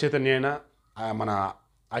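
A man speaking in two short phrases, with a brief pause between them.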